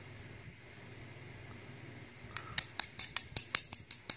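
After about two seconds of quiet, a fast run of sharp little metal clicks, about six a second, from a threaded brass lock cylinder being worked to free a pin stuck in one of its chambers.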